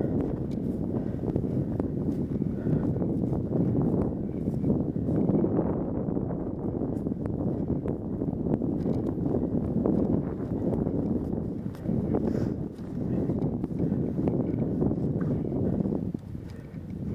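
Husqvarna dirt bike engine running at low revs, heard muffled with wind noise on the helmet mic. A scatter of knocks and rattles comes through as the bike rolls over rough ground.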